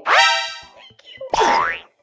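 Two cartoon-style sound effects: a springy boing that swoops up in pitch and holds, then about a second later a short, quick upward-gliding whistle-like sound.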